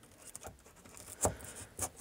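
Hobby knife blade cutting into the foam under the track, short faint scratching strokes with a sharper click about a second in and another near the end.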